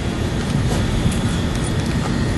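Steady, loud low rumble of outdoor noise, with a few faint clicks.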